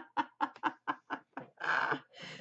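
A woman laughing: a run of short laugh pulses, about four a second, ending in a longer breath near the end.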